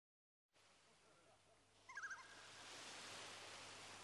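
Faint outdoor ambience fading in, with one short warbling bird call about two seconds in, over a steady hiss that slowly swells.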